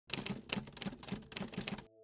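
Typewriter sound effect: a quick, irregular run of key clicks, several a second, stopping just before the end, where a soft steady tone of a few notes begins.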